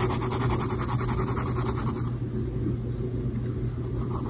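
Mechanical pencil lead rubbing and scratching on paper in rapid back-and-forth hatching strokes, drawn with the side of the lead. The strokes are densest for about the first two seconds, then grow fainter. A steady low hum underlies it throughout.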